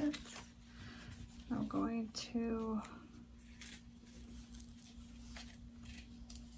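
A short murmured vocal sound about two seconds in, with soft handling clicks and rustles of a vinyl piece and its zipper, over a faint steady hum.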